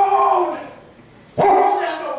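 Two long, high-pitched whines. The first is already sounding and fades in the first half second; the second starts about one and a half seconds in.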